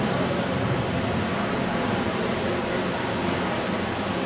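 Steady hiss of background noise with no speech, even and unchanging throughout.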